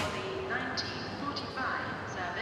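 Indistinct chatter of people on a busy railway station concourse, several voices over a steady background hum of the hall, with one sharp click right at the start.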